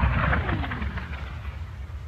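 Low rumble of a nearby artillery shell explosion rolling on and fading, with a whistle falling in pitch over about a second, typical of a mortar round in flight.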